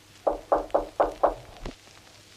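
Knuckles knocking on a wooden door: five quick raps, about four a second, then a softer sixth.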